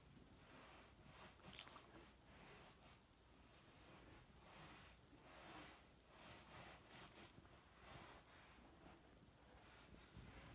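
Near silence: quiet room tone with a few faint, soft rustles.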